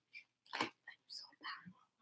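A woman's faint whispering and mouth sounds in a few short, soft bursts, with quiet between them.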